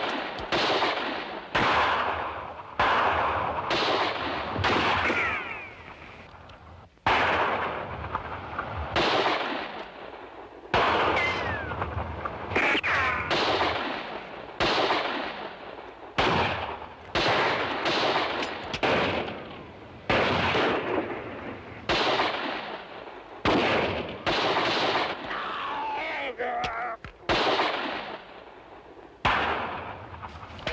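A gunfight of revolver and rifle shots, roughly one a second, each shot ringing out with a long fading echo. There is a short lull about six seconds in.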